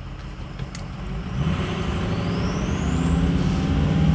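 A 6.0 Powerstroke V8 turbo-diesel in a 2005 Ford F-250 accelerating, heard from inside the cab and growing steadily louder. From about halfway in, a thin turbocharger whistle rises in pitch.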